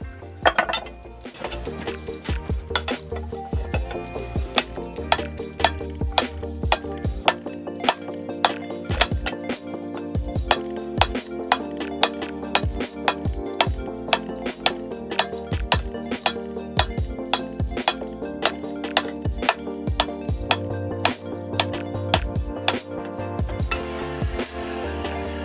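Cross-peen hammer striking red-hot steel on an anvil in a steady rhythm of about two to three blows a second, each with a short metallic ring, while drawing out a knife's tang.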